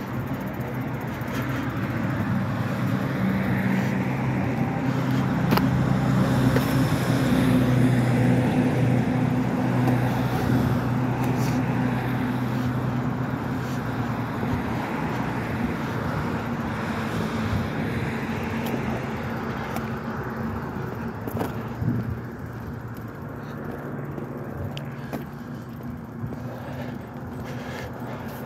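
Street traffic: a motor vehicle's low engine hum builds over the first few seconds, stays strongest for several seconds, then slowly fades. Steady road noise continues underneath, with a few faint clicks.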